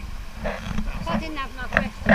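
Indistinct voices talking, with no clear words, over a low rumbling noise at the microphone.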